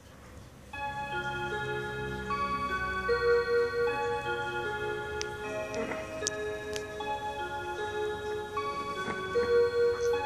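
Seiko motion wall clock starting its hourly electronic melody about a second in: a tune of clear, steady held notes played through the clock's speaker as its dial turns. A few light clicks come near the middle.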